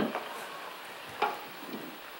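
Steady hiss and crackle of an old film soundtrack, with one short, sharp sound a little over a second in.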